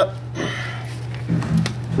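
A steady low hum, with brief rustling noises about half a second in and again around a second and a half in.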